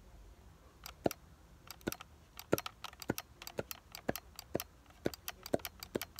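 Sharp plastic clicks from a hand-held orange toy gun being worked close to the microphone, starting about a second in and coming faster, several a second by the end.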